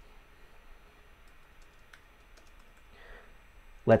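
Faint typing on a computer keyboard: a few scattered key clicks.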